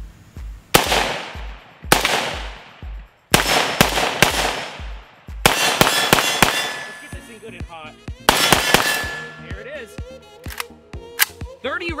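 Polish Tantal 5.45×39 rifle with muzzle brake fired in a series of single shots, roughly one a second with some quicker pairs, each crack followed by a long echo. Between shots there are metallic clangs and a short ringing ping.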